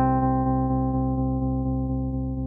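Electric piano chord struck after a short run of notes, held and ringing with a slow, steady fade.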